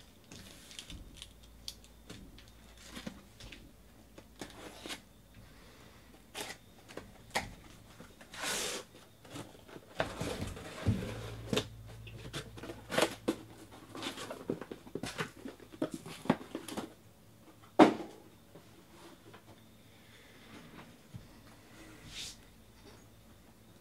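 Cardboard shipping case being handled and opened by hand, with scattered taps, scrapes and rustles. Longer sliding, tearing rushes come about 8 s and 10 to 12 s in, and there is a single loud knock about 18 s in.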